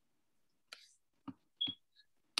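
Three faint computer mouse clicks, the last two close together.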